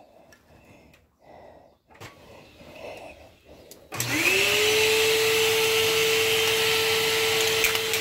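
A small vacuum cleaner used as the exhaust for a spray-painting enclosure is switched on about halfway through. Its motor spins up with a quickly rising whine, then runs steadily with a hiss of moving air.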